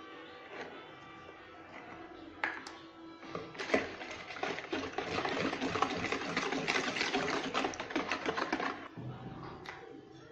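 Wire whisk beating cake batter in a plastic bowl, a fast run of scraping clicks against the bowl from a few seconds in until shortly before the end, as powdered sugar is mixed in.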